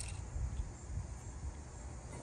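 Quiet outdoor ambience: a low rumble on the microphone under faint, steady insect chirring.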